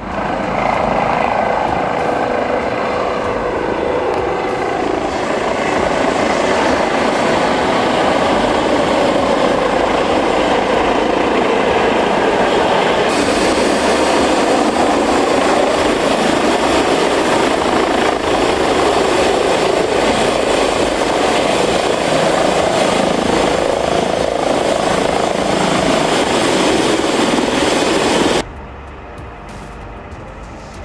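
Eurocopter H135 (EC135) twin-turbine helicopter running at close range: loud, steady rotor and turbine noise that cuts off abruptly near the end.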